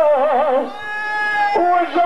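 A voice chanting a noha, the sung mourning recitation: long drawn-out notes, first wavering with vibrato, then held steady for about a second, then a new note near the end.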